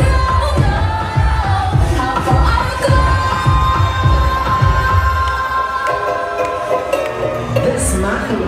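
Loud pop music with a sung vocal and a regular bass beat, played over a club sound system. About two thirds of the way through, the beat drops out while a long high note is held.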